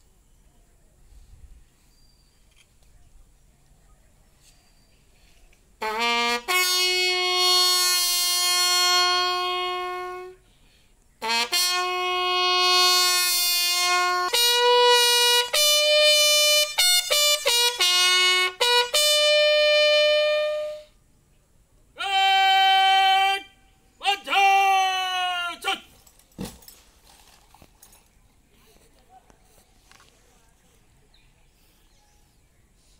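A bugle call sounded as a ceremonial salute to the fallen: long held notes and runs of shorter stepped notes in four phrases, starting about six seconds in, the last phrase sliding down in pitch as it ends.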